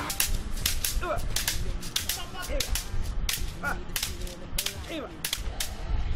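Bundle of shaved bamboo sticks striking in sharp, irregular cracks, several a second: a pencak silat body-hardening (pengerasan) drill.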